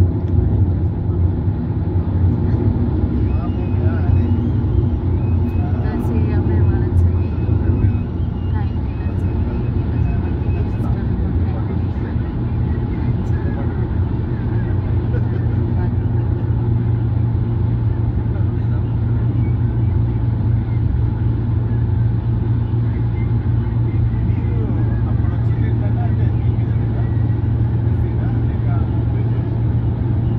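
Steady road and engine noise inside a vehicle cabin travelling at highway speed: a continuous low drone with a steady hum underneath.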